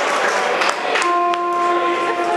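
Live rock band on stage at the start of a song. A noisy wash of stage and crowd sound comes first, then about a second in a single sustained synth keyboard note comes in and is held steady.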